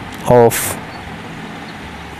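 A man's voice says one short word over a steady low background hum.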